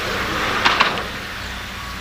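A car passing on the nearby road: a swell of tyre and road noise that peaks about half a second in and then fades, with a few short clicks near the peak.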